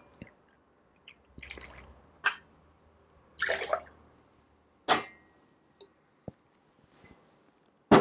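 Bourbon poured from the bottle into a steel jigger and tipped into a stainless shaker tin: two short splashes of liquid among a few sharp clinks of metal and glass.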